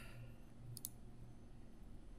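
Two quick computer mouse clicks close together, about three-quarters of a second in, made while choosing an item from a dropdown list. A faint steady low hum lies underneath.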